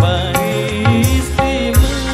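Live dangdut koplo street band playing: keyboard and electric guitar over drums, a pitched melody line bending up and down above steady low drum hits.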